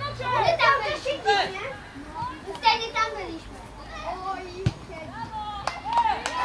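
Young footballers shouting and calling to each other on the pitch, high boys' voices in short bursts, with one dull thud about two-thirds of the way through.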